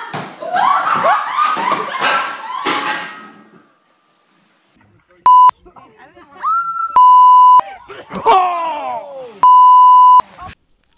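Loud, excited women's voices for about three seconds, then after a short pause three loud, steady censor bleeps at one high pitch, the last two longer, with a voice sliding down in pitch between them.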